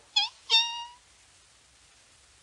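A piglet's pitiful squeal imitated by a man's voice on an old 78 rpm record: a short high squeak, then a longer, steady high squeal that stops about a second in.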